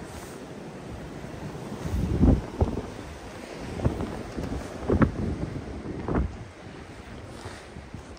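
Blizzard wind buffeting the microphone in uneven gusts, with the strongest blasts about two, five and six seconds in.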